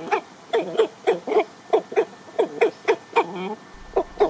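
Dresdner chickens clucking, a run of short calls at about three a second.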